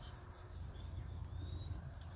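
Quiet outdoor background: a steady low rumble with a faint short bird call about a second and a half in.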